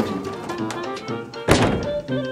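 Background music plays throughout. About one and a half seconds in, a dumpster's plastic lid slams shut with a single loud thunk.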